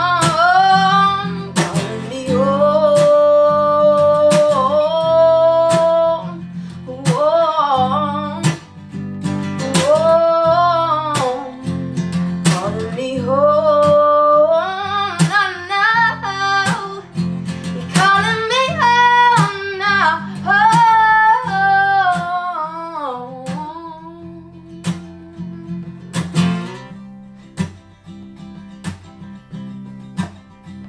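A woman singing long held, sliding notes over a strummed steel-string acoustic guitar. About three-quarters of the way through the voice stops and the guitar carries on strumming more softly.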